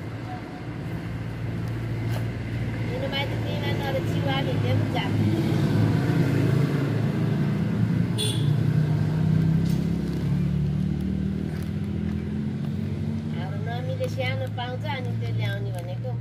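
An engine running steadily, swelling louder through the middle and easing off again. A high-pitched child's voice comes in twice, a few seconds in and near the end, with a single sharp click about halfway.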